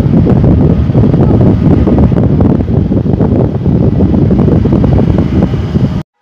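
Wind buffeting a phone's microphone: a loud, gusty low rumble that cuts off suddenly at the end.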